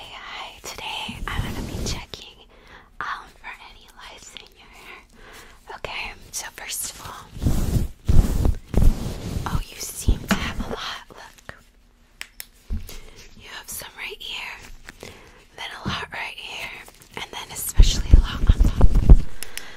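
Soft whispering close to a microphone, with gloved fingers rubbing and plucking at its furry windscreen, giving low, muffled bursts of rustling that are loudest about eight seconds in and again near the end.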